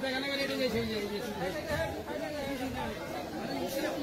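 Several people talking at once, overlapping voices.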